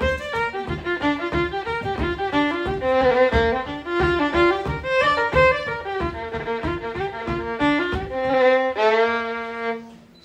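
Solo fiddle playing a flowing melody of many short, connected bowed notes. Near the end it settles on one long held low note that fades out, which the player calls the B flat moment.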